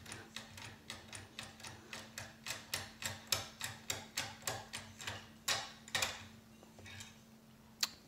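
Decoder pick working inside a Securemme 3x3 double-bit lock, giving a quick run of light metal clicks, about four a second, as it is worked against the pins. The clicks thin out about six seconds in, and a single sharp click comes near the end as the first turn of the lock is completed.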